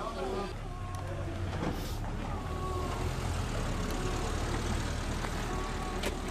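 A motor vehicle engine running steadily, with faint voices talking in the background.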